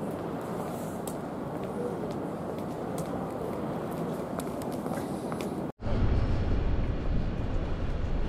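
Steady background noise of a city street with traffic, with a few faint clicks. Just before six seconds it drops out briefly and comes back louder and deeper, as a heavy low rumble.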